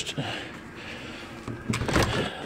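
Handle and latch of a uPVC back door clicking as the door is opened, a few sharp clicks near the end after a quiet stretch.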